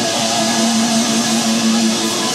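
Live rock band playing loud, with heavily driven electric guitars and a long note held steadily through most of the moment.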